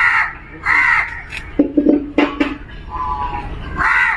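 Crows cawing outdoors: three short harsh caws, one right at the start, one about a second in and one at the end, with a brief low voice-like sound in between.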